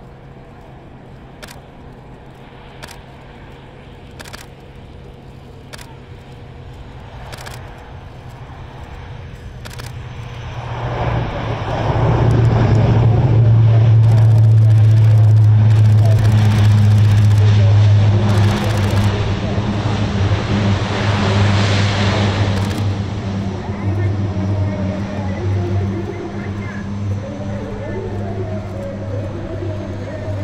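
Lockheed C-130 Hercules turboprops running as the aircraft comes in and rolls along the runway: a steady low propeller hum that swells sharply about eleven seconds in, stays loudest for several seconds and then eases off.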